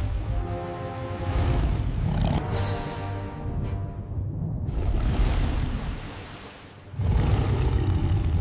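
Soundtrack of an AI-generated sea-monster clip: dramatic music with held tones over a deep rumble of stormy sea. It dips quieter in the middle, then a loud low roar breaks in about seven seconds in.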